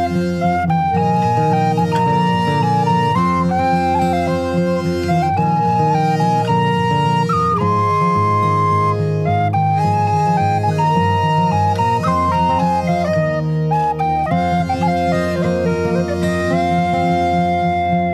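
Instrumental break in a traditional ballad: an ornamented wind-instrument melody played over a continuous low drone, with no singing.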